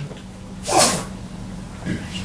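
A single short, sharp burst of breath noise from a person, about three-quarters of a second in.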